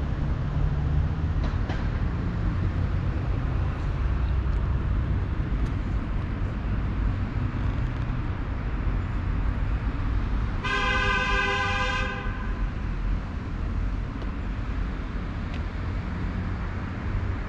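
Steady low rumble of road traffic, with a vehicle horn honking once for just over a second about eleven seconds in.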